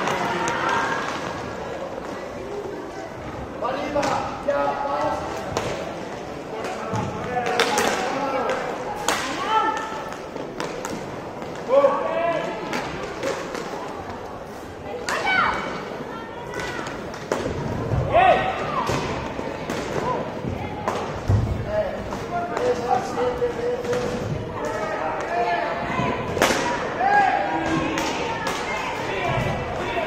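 Inline hockey game: voices shouting and calling out, with sharp knocks of sticks on the puck and against the rink boards.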